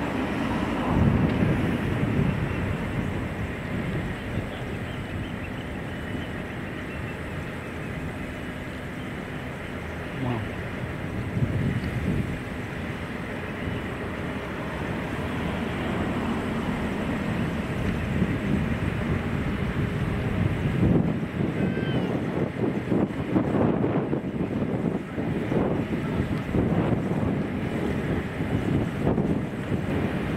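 A steady engine rumble mixed with wind buffeting the microphone, swelling and easing unevenly.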